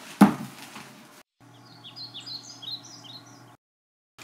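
A sharp thump as the tissue-wrapped packaging is handled, then small birds chirping faintly over a low steady hum: a quick series of short, high, falling chirps that stops abruptly.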